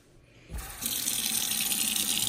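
Kitchen faucet turned on about half a second in, its water running steadily into the sink's garbage disposal drain.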